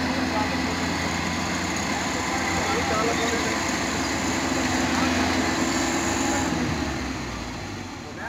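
Kubota KAR90 crawler combine harvester running, a steady engine drone with a constant hum. It grows quieter over the last second or so.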